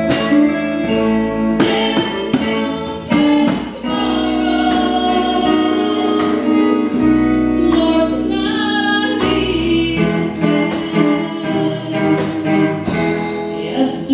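A live band playing: a woman singing lead over electric guitars and a drum kit, with the drums keeping a steady beat.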